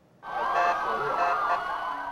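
Several vehicle sirens sounding at once, their pitches sliding and overlapping. They start suddenly a moment in.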